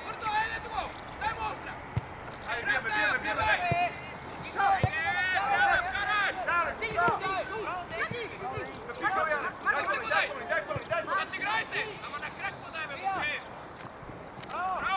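Shouted calls from players and coaches across a football pitch, coming and going throughout, with a couple of sharp knocks about two seconds and five seconds in.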